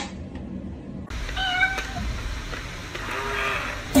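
A metronome clicks once or twice as a cat paws at it. Then a cat meows once, about a second and a half in, with a fainter call near the end.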